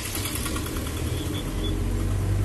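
Mahindra Bolero pickup's engine and road noise heard inside the cab while driving: a steady low drone that grows stronger about one and a half seconds in.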